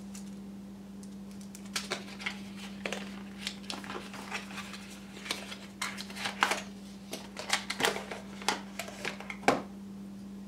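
Cardboard box and clear plastic blister packaging being handled and opened: irregular crinkles and clicks that grow busier in the second half, over a steady low hum.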